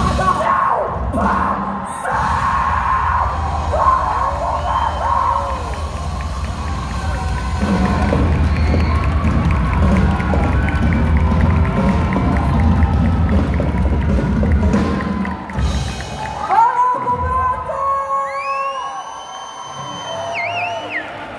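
Live metal band playing at full volume, distorted guitars, bass and drums, with the crowd cheering. The song stops about four seconds before the end, leaving ringing guitar notes that glide up and down in pitch over the crowd's cheering.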